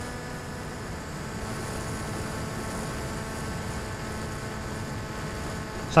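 Steady drone and rushing noise of an electric RC flying wing in flight, picked up by its onboard camera: motor and propeller running at cruise, with wind over the airframe.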